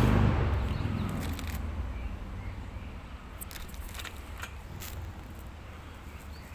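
Wind buffeting the microphone: a low rumble that dies down over the first couple of seconds, followed by a few faint clicks.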